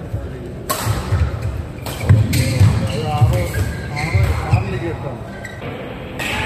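Badminton rally on an indoor court: sharp racket strikes on the shuttlecock about a second and two seconds in, players' feet thumping on the court mat, and voices calling in the middle.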